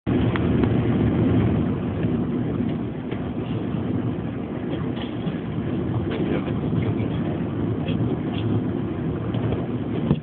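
Steady road and engine rumble heard inside the cabin of a moving car, with a few faint short clicks or squeaks over it.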